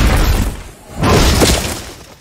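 Film sound effects of a military vehicle crashing and tumbling in sand: two loud crashes with breaking debris, the second about a second in, fading away near the end.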